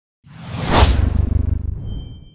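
Logo-intro sound effect: a whoosh that swells and peaks just under a second in over a deep rumble, dying away over the next second and a half, with a thin high ringing tone lingering behind it.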